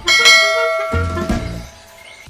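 Bell chime sound effect, struck once and ringing with several tones that fade away over about a second and a half.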